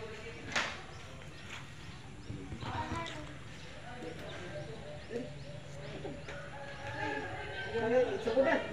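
Faint voices of people talking quietly, with a single sharp click about half a second in.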